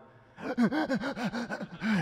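A man gasping in quick voiced pants, about seven a second, starting about half a second in: he is acting out someone gulping for air after surfacing from a long breath-hold, and the gasps blend into breathless laughter.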